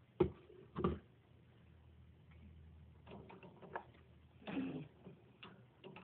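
Plastic pet exercise ball and wire cage being handled: two sharp knocks in the first second, then scattered lighter clicks and a brief rattle about four and a half seconds in.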